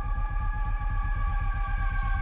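Dark electronic music: a held synth chord of several steady tones over a fast, evenly pulsing low bass.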